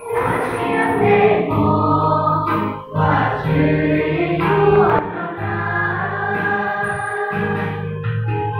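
Mixed youth choir singing a hymn of praise in Hmong, holding long chords with a short breath between phrases about three seconds in and a new phrase starting about five seconds in.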